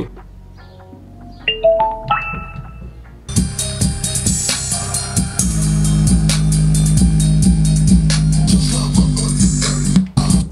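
SVEN PS-95 portable Bluetooth speaker giving a short run of rising beeps, then playing loud music with drums and bass from about three seconds in. After its underwater test it sounds normal again, though its cone has not yet returned to its resting position.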